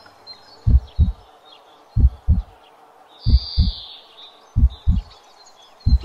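Heartbeat sound effect: low double thumps, lub-dub, a pair about every 1.3 seconds, with birds chirping faintly behind.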